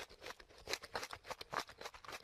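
A groundhog chewing a piece of orange food held in its paws: a faint, quick, irregular run of small crisp crunches, about six a second.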